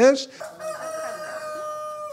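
A rooster crowing: a quick rising call that runs into one long held note, lasting about a second and a half.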